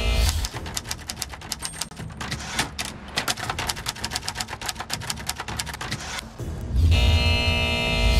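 Rapid clacking of manual typewriter keys, several strokes a second, for about five seconds. Before and after it come short music stings with deep bass: one fading in the first half second and one starting about seven seconds in.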